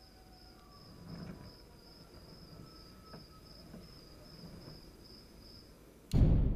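A cricket chirping in an even string of short high pulses that stops just before the end, faint, with a few soft rustles underneath.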